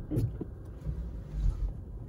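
Low, steady rumble of a 2021 Toyota Prius AWD's tyres rolling slowly over packed snow and ice, heard from inside the cabin.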